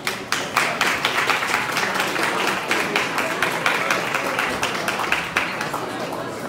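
Audience applauding with many hands clapping, starting just after the start and dying down near the end.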